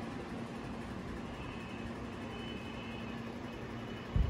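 Steady background hum and hiss, with no distinct events.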